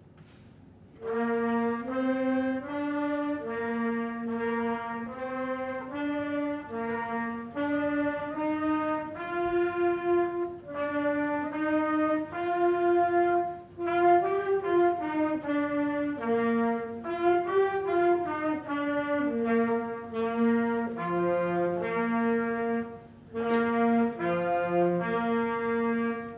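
Trumpet playing a melody of distinct notes, starting about a second in, with a brief break near the end.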